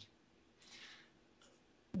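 A man's short, soft in-breath, an airy hiss lasting about half a second, over quiet room tone; speech starts again at the very end.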